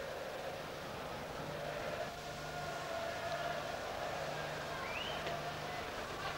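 Faint, steady football stadium ambience carried on the match broadcast: a low background with a faint hum and a brief rising tone about five seconds in.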